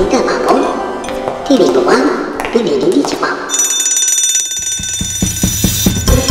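Cartoon characters' wordless vocal exclamations and chatter over music. About halfway through, a high, steady electronic ringing like a bell or alarm starts and runs on, with quick ticking underneath it near the end.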